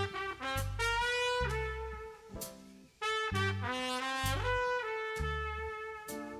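Trumpet playing a slow, lyrical melody, one held note after another, over a low bass line from the backing band.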